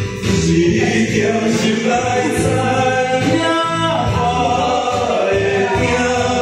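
A man singing a song into a handheld microphone over amplified backing music, karaoke style.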